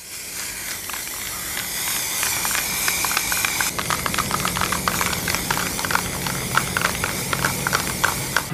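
Aerosol spray can of black primer hissing steadily as it sprays paint onto a globe.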